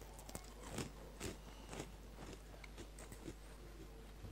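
A person chewing a crunchy chip close to a headset microphone: a row of crisp crunches, the loudest about every half second in the first two seconds, then softer chewing.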